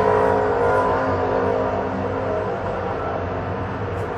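A steady, engine-like motor hum made of several pitched tones, slowly getting quieter over the few seconds.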